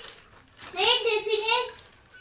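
Speech only: a boy reading one short phrase aloud, about a second long, starting just over half a second in.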